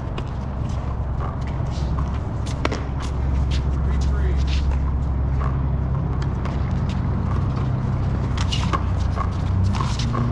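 A steady low hum that grows louder about three seconds in, with scattered short sharp taps and clicks over it.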